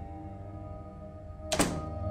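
A wooden door shuts with a single thunk about one and a half seconds in, over soft background music of held notes.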